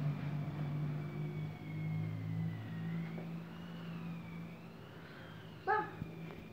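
A steady low hum like a motor or engine running, with a faint high whine that slowly wavers in pitch.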